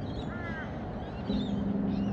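A crow caws once, a short arched call. About a second later a steady low hum sets in and keeps going.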